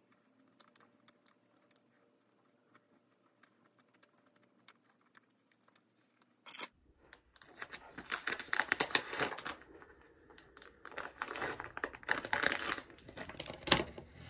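A plastic wet-wipe packet crinkling loudly in irregular bursts as it is handled and pulled open, starting about halfway through after a near-quiet stretch.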